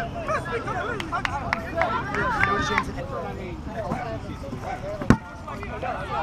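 Players and spectators shouting and talking across an open field, with one sharp thump about five seconds in: a foot kicking a rubber kickball.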